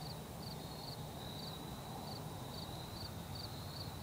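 Night insects, likely crickets, trilling steadily in a high-pitched tone with short chirps about two or three times a second, over a faint low steady hum.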